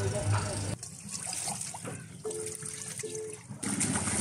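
Background music cuts off under a second in, giving way to sea water lapping and splashing around boats, with a short steady two-note hum near the middle.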